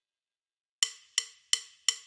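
Four short, evenly spaced wood-block clicks, about three a second, after a moment of silence: a percussion count-in to the cartoon's theme jingle.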